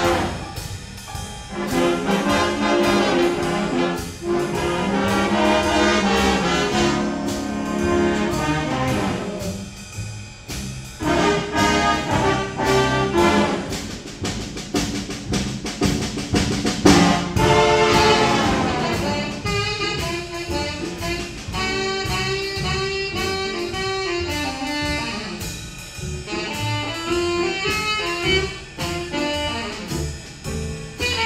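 School jazz band of saxophones, trumpets and trombones playing. The first half is full-band brass chords. From about 19 s the playing turns to quicker short notes, with a standing saxophonist taking a solo.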